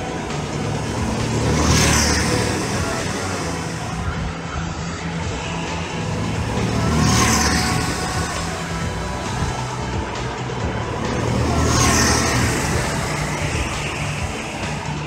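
Go-kart engines running on a track, with a kart passing close three times, about five seconds apart, each pass swelling and fading.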